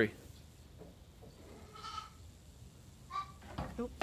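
A goat bleats faintly about two seconds in, then gives a shorter call about a second later.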